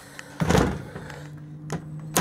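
Wooden bathroom wall panels of a camper van being pushed shut, with a thud about half a second in and a latch click near the end. A steady low hum runs underneath.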